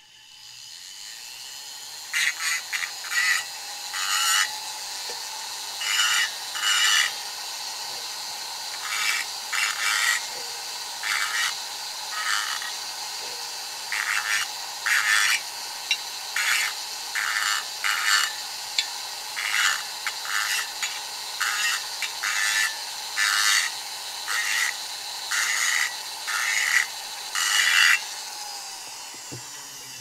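Handheld rotary tool running with a steady high whine, its small bit chamfering the port edges of a Yamaha CT2 175 two-stroke cylinder in many short grinding strokes, each a brief rasp. It spins up at the start and winds down near the end. The chamfering takes off the sharp port edges so they will not catch the piston rings.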